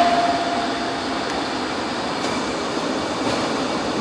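Steady rushing background noise, like a fan or air handler running, with a steady mid-pitched tone that fades out about a second in.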